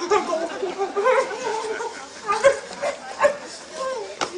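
Short whining, whimpering cries, pitched and bending, thickest in the first second and then coming in scattered short bursts.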